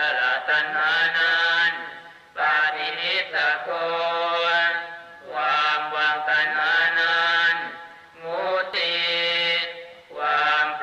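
Buddhist chanting in a steady, level-pitched voice, sung in phrases of two to three seconds with short breaks between them.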